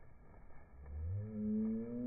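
Background music: a low, deep tone slides upward about a second in and settles into a sustained, ringing chord that holds steady.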